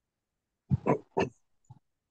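A man's voice making two short, low, wordless vocal sounds, like clearing the throat, then a faint third.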